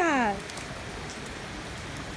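Pouring rain falling on a wet street, a steady hiss.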